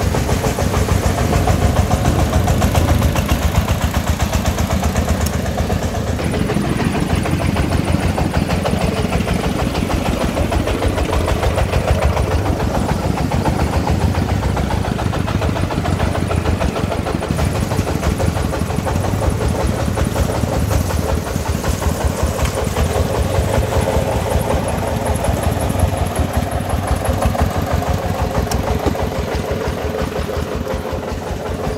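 Single-cylinder diesel engine of a loaded công nông farm truck running on the move, a steady fast chugging.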